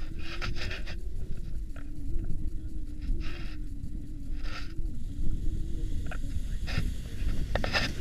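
Wind buffeting an action camera's microphone, with a faint steady hum under it. Short rustles and scrapes of harness straps and clothing come every second or two as a tandem paragliding harness is adjusted.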